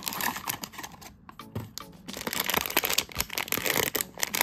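Cardboard blind box being opened by hand and its foil bag crinkled: a dense run of crackling and rustling, loudest in the second half.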